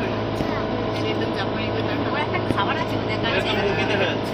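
Safari vehicle's engine running steadily with a low hum, with passengers talking faintly over it.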